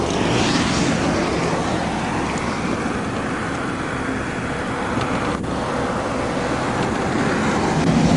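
Steady roadside noise: wind on the microphone and highway traffic going past, growing a little louder near the end as another vehicle approaches.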